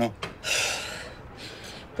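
A person's long breathy sigh, loudest at its start about half a second in and fading away, a sound of being overwhelmed.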